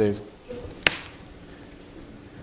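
A single sharp knock a little under a second in, against low room tone.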